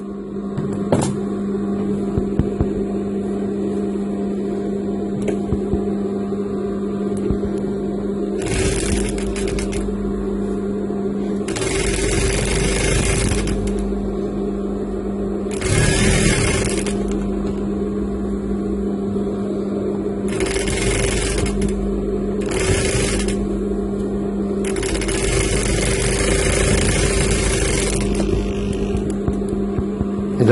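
Industrial flat-bed lockstitch sewing machine with its motor humming steadily. Several short runs of stitching start about eight seconds in, and the longest, about three seconds, comes near the end.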